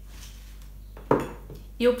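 A glass jar of black olives set down on a hard surface, one sharp knock about a second in.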